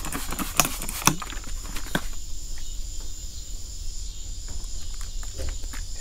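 Hand trigger spray bottle squirting an alcohol-and-water panel wipe onto freshly compounded automotive clear coat, a handful of quick squirts in the first two seconds. After that, only a quieter steady hiss.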